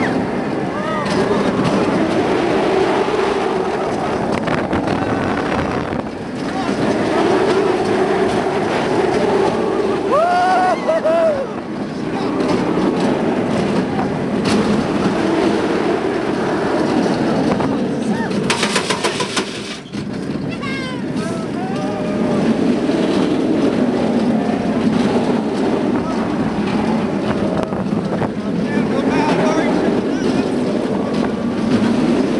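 Kumba steel roller coaster train running fast along its track: a steady loud roar of wheels on rail and wind on the microphone, with riders yelling now and then. A brief rapid rattle a little past halfway.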